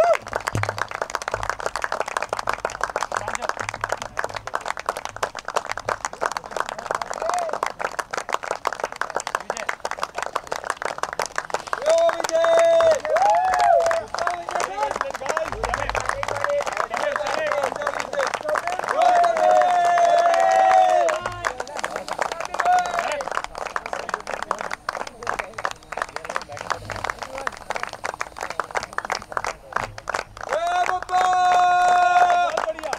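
A small group clapping steadily, many separate hand claps, for a medal presentation. Voices call out and talk over the clapping, most plainly a little before halfway and again about two-thirds of the way through.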